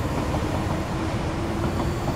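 Steady low rumble of outdoor city ambience with a faint steady hum.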